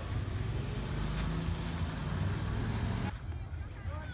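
Wind buffeting the microphone at the beach, over a low steady engine drone from a jet ski on the water. The sound cuts off abruptly about three seconds in.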